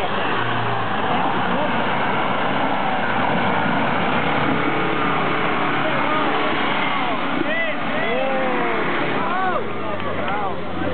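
Jeep Wrangler Rubicon engine running under load as it crawls through deep soft mud, its tyres churning and digging into the dirt with a steady loud rush. Raised voices call out over it in the last few seconds.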